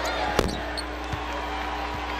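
A basketball bouncing on a hardwood court: one sharp bounce about half a second in, then lighter dribbles roughly every second.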